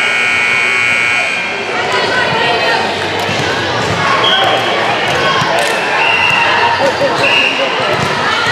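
Echoing volleyball gym: a long shrill tone for the first second and a half, then several short referee whistle blasts from the courts. Volleyballs smack and bounce throughout, over steady crowd and player chatter.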